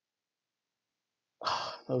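Dead silence for over a second, then a man's audible, breathy sigh that runs straight into speech at the end.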